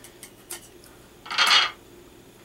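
A few light clicks, then about one and a half seconds in a short, louder scrape and rattle of a thin metal-foil feather against a metal tray as it is handled.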